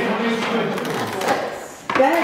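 Indistinct chatter of people talking around card tables, with a few light knocks as playing cards are laid down on the table.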